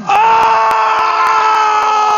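A person screaming one long, loud "Oh!", held at a steady pitch, in reaction to a wrestler's bump through a table. Faint regular clicks, about four a second, run behind it.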